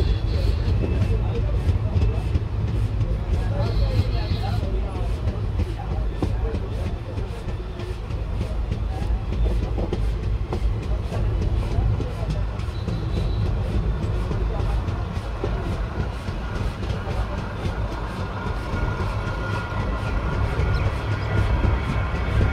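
Passenger train running along the track, heard from on board: a steady low rumble of wheels on rail with continual clatter.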